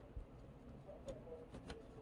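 A few faint, scattered ticks of a thin tool tip picking at a laptop motherboard around the CPU socket, working loose leaked liquid-metal thermal compound.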